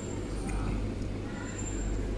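Steady low background rumble of a busy room, with faint voices in the background and a thin high whine.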